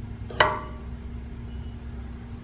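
A dowel tip meeting the inside of a jet pump intake housing: a single sharp knock with a short ringing tail, about half a second in, as it touches where the driveshaft will pass through.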